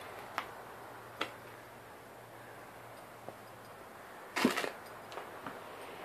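Quiet room tone with a faint low hum and a few isolated faint clicks. About four and a half seconds in comes a short crunching scuffle, as of a person moving over a debris-strewn floor.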